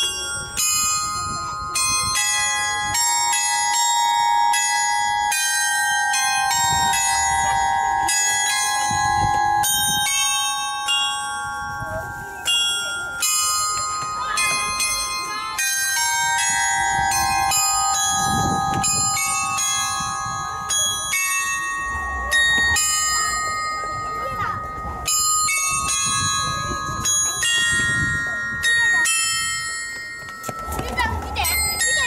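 A large bell music box, a frame of cast metal bells struck in turn, playing a melody; each note rings on and overlaps the next.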